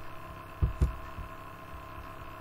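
Steady electrical hum, with two dull low thumps close together just over half a second in.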